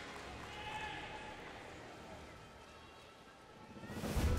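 Faint on-court sound of a badminton doubles rally, with a few high shoe squeaks on the court early on, fading away toward near silence.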